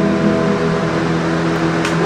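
Electric guitar chord held and ringing through an amplifier, several notes sustaining evenly with no new strums.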